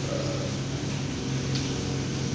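Steady low hum with an even hiss over it, from a wall-mounted split air conditioner running in a small room.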